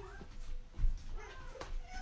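Spoonfuls of thick hot process soap being scooped from an electric roaster and packed into a loaf mold, with a dull thump a little under a second in. Faint, high, arching calls sound twice in the background.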